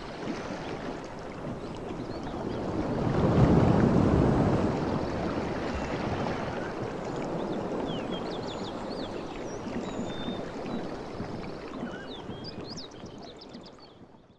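Outdoor ambience: a steady rushing noise like flowing water, swelling loudest about three to four seconds in, with short high chirps scattered through the second half, fading out at the end.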